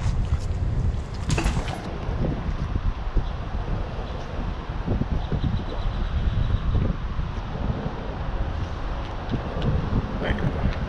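Wind buffeting the microphone, a steady low rumble with constant flutter, with a brief rushing noise about a second and a half in.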